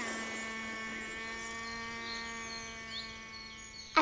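One held electronic tone, starting suddenly and slowly fading over about four seconds, with a few faint high chirps over it in the second half: a synthesized transition sound effect under a scene wipe.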